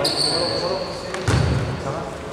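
A referee's whistle sounds one steady high note for about a second. Just after, a basketball bounces once on the hardwood court with a low thud.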